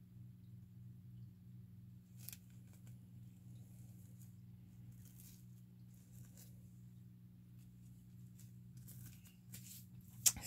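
Near silence: a steady low hum, with a few faint clicks and rustles of a glass candle jar being handled and its lid put back on.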